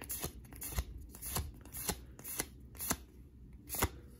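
Pokémon trading cards being flicked one at a time from the front of a hand-held stack to the back, each card giving a short paper snap, about twice a second.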